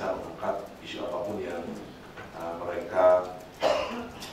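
Only speech: a man talking into a microphone in a small room.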